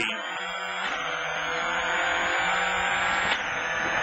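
Subaru Impreza WRC's turbocharged flat-four accelerating hard in the cabin, its pitch climbing through the gears with upshifts about a second in and again near the end, under a steady rush of gravel road noise.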